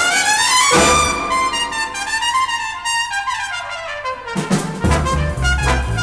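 Big-band jazz orchestra from a mono LP, led by its trumpet and brass section. High brass lines hold and slide up and down over a sustained chord while the low end drops away. About five seconds in, the bass and rhythm section come back in under the band with a swinging beat.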